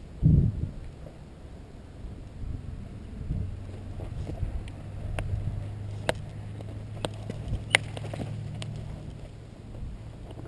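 A horse moving around on sand. From about three seconds in there is a steady low motor hum, and five or six sharp clicks come in the second half.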